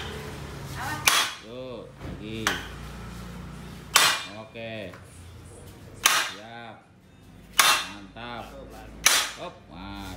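A club hammer strikes the steel rear trailing arm and torsion axle of a Peugeot 206 in seven heavy blows, about one every second and a half, each followed by a brief metallic ring. The blows are knocking the arm off the axle to get at its worn, loose torsion bearings.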